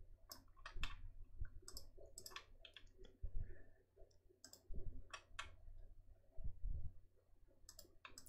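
Faint computer mouse clicks, scattered irregularly, several in quick pairs.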